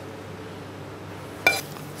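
A metal spoon clinking once against a dish, a sharp click with a brief ringing tone about one and a half seconds in, over a steady low kitchen hum.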